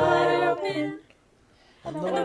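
A small group of young voices singing together, mixed from separate home recordings. A sung phrase ends about a second in, there is a short pause, and the singing comes back in near the end.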